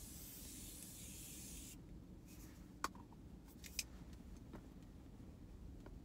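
Morphe setting spray bottle spraying a fine mist: a soft, even hiss that cuts off sharply a little under two seconds in. A few faint clicks follow.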